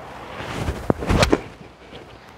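A golf club swung and striking the ball about a second in, a short sharp crack on a low, punched shot.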